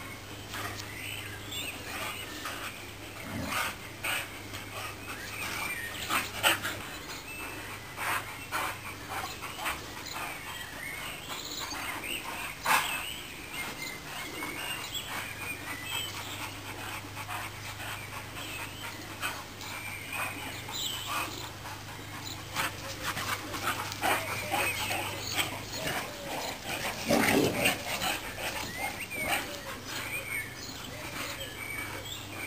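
Two dogs, a boxer and a Dogue de Bordeaux, playing rough: panting, with scuffling movement throughout and a louder flurry of play noise a few seconds before the end.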